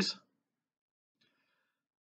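A man's word trailing off, then near silence with a faint breath about halfway through.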